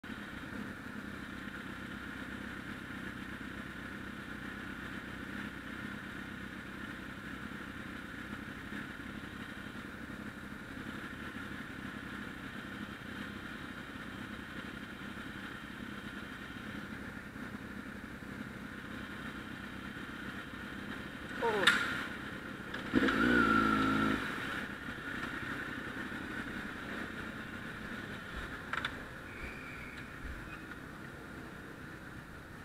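Motorcycle engines idling in stopped traffic, a steady hum. About two-thirds of the way through, a sudden loud clatter is followed by a louder burst with a raised voice, lasting about a second and a half, as a rider collapses and his motorcycle goes over.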